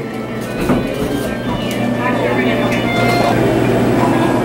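Indistinct chatter of people over a steady low hum, with no clear words.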